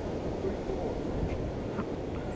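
Wind buffeting the microphone of a body-worn camera: a steady low rumble with no distinct events.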